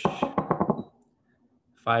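A man's voice reading aloud: a "shush" that runs into a short stretch of voiced sound, ending about a second in. After a second's pause the next word begins near the end.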